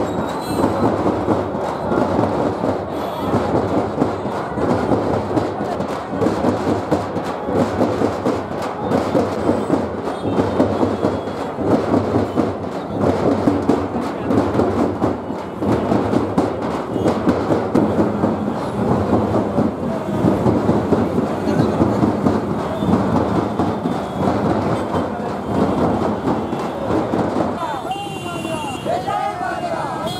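A group of dappu frame drums beaten with sticks in a fast, steady, loud rhythm, with crowd voices mixed in.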